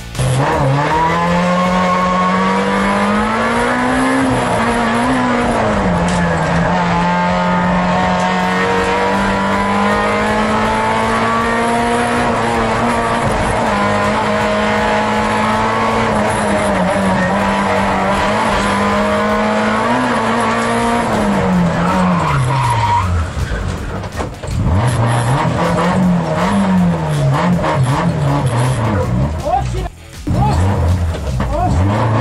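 Hillclimb rally hatchback's engine heard from inside the cabin, held at high, nearly steady revs for about twenty seconds. About three-quarters of the way through, the revs fall away and the sound briefly drops, where the car spins (tête-à-queue). The engine then revs up and down again.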